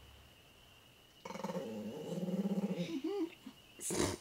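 Chihuahua growling: a steady, pulsing growl of about a second and a half starting a little over a second in, then a short rising-and-falling sound. The growl is an annoyed warning at being teased.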